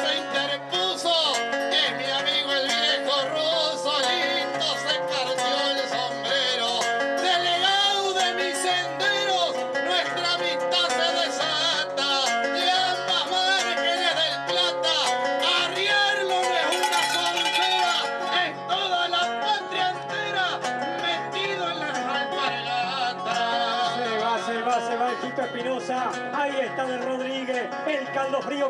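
Two acoustic guitars strummed and picked together, accompanying a man singing folk verses into a microphone, in the manner of a payada.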